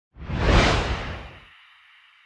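A whoosh sound effect that swells up and dies away over about a second and a half, leaving a faint high shimmer.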